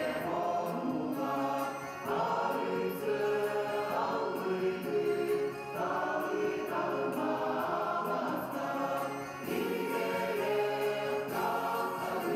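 Mixed choir of men's and women's voices singing together, in phrases a few seconds long.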